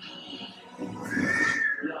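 A movie creature's shriek over a low growl, rising and falling in pitch and lasting about a second, from the film's soundtrack.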